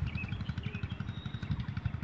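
A low, rapidly pulsing background rumble, about fifteen pulses a second, in a gap with no speech.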